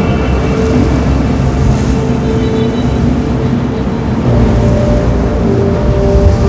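Dark, sustained film score of held notes that shift about four seconds in, over a deep, steady rumble of blizzard wind.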